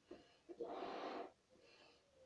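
A boy blowing into a rubber balloon to inflate it: a short puff, then one long breath of about a second starting about half a second in.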